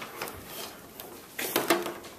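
Soft handling sounds as a Cat5 cable and its RJ45 plug are moved by hand: a few light clicks and rustles, with a short murmur of a voice near the end.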